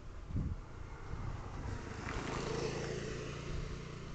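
A motor vehicle engine running, with its sound swelling about two seconds in and then easing off.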